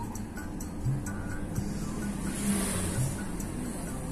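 A car's cabin noise while driving on the road, with music with a steady beat playing alongside. About halfway through, a brief hissing swell of noise rises and fades.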